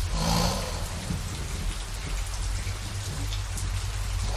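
Steady rain falling over a constant low rumble, swelling briefly in the first second.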